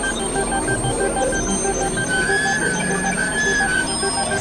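Experimental electronic synthesizer music: rapid repeating beeps at several pitches over a steady bed, with a wavering high tone entering about halfway through and fading out near the end.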